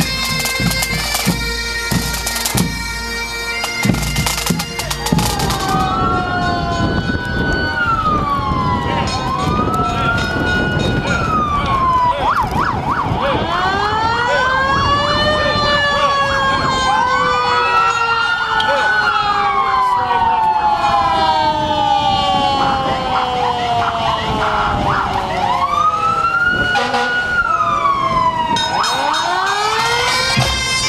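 Bagpipes and drums of a pipe band play for the first few seconds, then give way to several emergency-vehicle sirens wailing at once, their overlapping rising-and-falling glides continuing until bagpipes return near the end.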